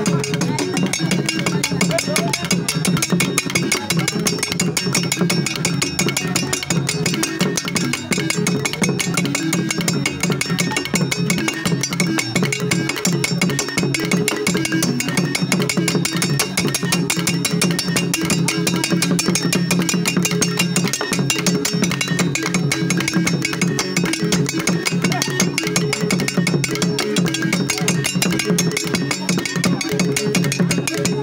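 Wooden frame xylophone played with mallets in a fast, unbroken run of notes, with drumming alongside.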